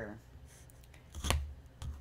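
A clear acrylic ruler handled and set down on chipboard over a cutting mat: soft handling thuds, with one sharp click about a second in.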